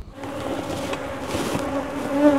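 Honeybees buzzing in numbers at the hives, a steady hum that starts just after the beginning.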